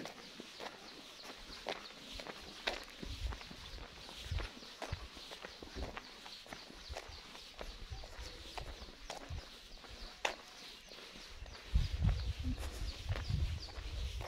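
Footsteps on a village path, irregular steps about once or twice a second, with faint high chirping throughout and a low rumble near the end.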